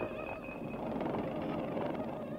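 Electroacoustic sound-art texture: a dense noisy rumble with a thin high steady tone that stops about halfway through.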